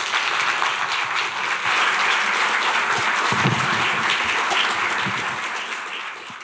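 Audience applauding steadily after a lecture, a dense patter of many hands clapping that begins to ease near the end.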